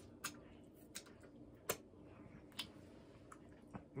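Wet mouth clicks and smacks from a man licking food off his fingers and chewing: a few short, sharp clicks about a second apart, the loudest a little before the middle, over a faint steady hum.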